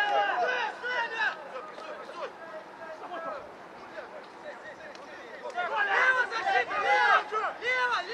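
Several voices shouting across a rugby pitch during open play, calls overlapping. The shouts are loudest at the start and again over the last few seconds, with a quieter lull in between.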